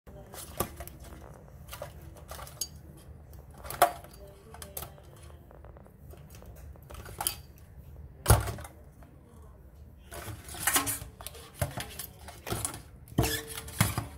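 Irregular clicks, taps and scrapes on a stainless steel sink as a live blue crab's legs and claws scrabble on the metal and a silicone spatula prods and flips it. The loudest knock comes about eight seconds in, and the taps come closer together near the end.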